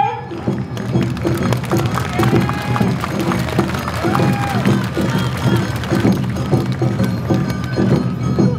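Awa Odori festival music: drums beating a steady, quick rhythm under a melody line, the accompaniment for a dance troupe.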